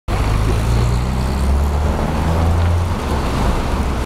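Street traffic: cars driving past on a slushy winter road, a steady hiss of tyres over a deep engine rumble that eases off about three seconds in.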